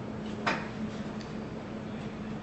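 A single sharp click about half a second in, over a steady low hum.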